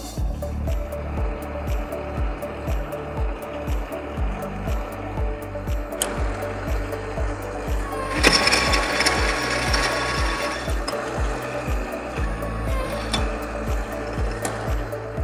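Upbeat background music with a steady beat, over a universal milling machine feeding its cutter along the workpiece to mill left-hand helical knurl teeth. A harsher, noisier stretch about eight seconds in lasts some two seconds.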